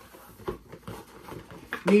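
Cardboard box and paper packaging being pulled apart by hand: a few short rustles and taps, the strongest about half a second in.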